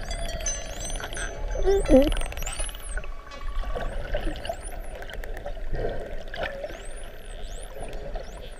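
Atlantic spotted dolphins whistling underwater: many short high whistles that rise and then fall, with clicks and a louder low swooping call about two seconds in, over a steady wash of water noise.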